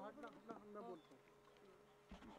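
Near silence, with faint, indistinct voices away from the microphone in the first second.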